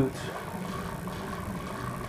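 A steady mechanical hum in the background, even throughout, with no knocks or clicks standing out.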